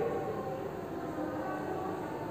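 A faint steady hum made of a few held tones, unchanging throughout.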